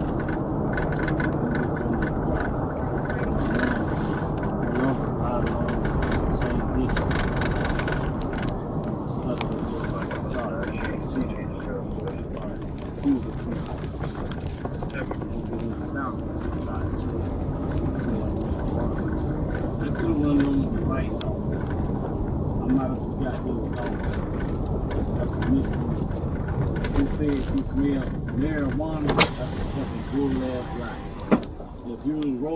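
Steady vehicle running noise inside a police patrol car, with muffled, indistinct talking over it. There is a sharp click near the end.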